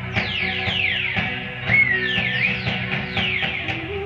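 Rock band playing live, with electric guitar over a dense low end, and quick falling squealing sweeps repeating several times a second, plus a wavering high whine in the middle.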